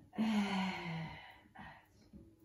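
A woman's audible, voiced exhale, a sigh-like breath about a second long that falls slightly in pitch, taken during a standing Pilates rotation; a short breathy sound follows near the end.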